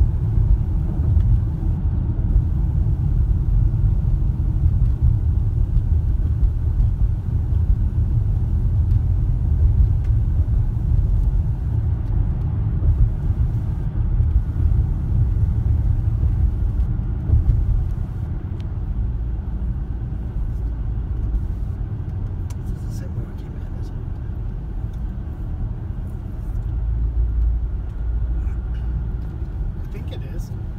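Steady low rumble of a car driving, heard from inside the cabin: tyre and engine noise on a winding road. It gets a little quieter a bit past the middle.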